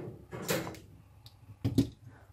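Handling noises on a workbench: a short rustle, then two sharp knocks near the end, as long-nose pliers are moved off a perfboard and set down and the board is picked up.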